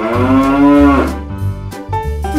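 A single long cow moo lasting about a second, over children's music with a steady bass beat.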